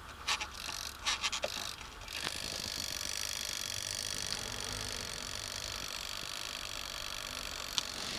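Rotary control dial on a retort-pouch warmer being turned, a quick run of small clicks in the first two seconds. About two seconds in, a steady whir sets in and carries on.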